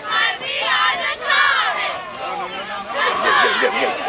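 Cheerleaders chanting a cheer in unison: high voices shouting in short, rhythmic bursts, with a brief lull midway before the chant picks up again.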